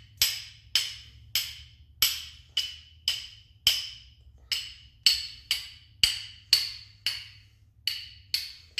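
Carbon-steel striker scraped down a flint over and over, about two strikes a second, each a sharp scrape with a short ringing metal tone. The sparks are not catching on the cotton ball.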